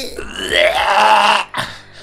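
A person's drawn-out vocal cry, not words, lasting about a second and a half.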